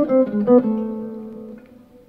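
Clean archtop hollow-body electric guitar playing a few quick single notes, an enclosure resolving toward A minor, ending on a held note that rings and slowly fades.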